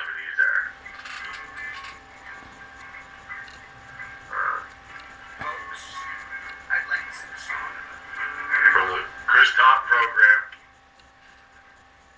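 Voices talking indistinctly with music in the background. The loudest stretch comes a couple of seconds before the end, then the sound drops away.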